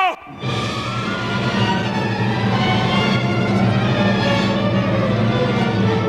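Opera orchestra playing a steady, sustained passage with strong low held notes. A singer's phrase ends on a falling note at the very start, and after a brief drop in level the orchestra carries on alone. It is an old 1949 recording.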